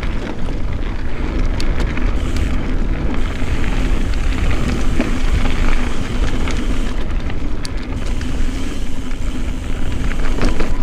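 Mountain bike rolling fast along a dirt singletrack: tyres running over dirt and leaf litter with scattered clicks and rattles from the bike and loose stones, over a low rumble of wind on the microphone.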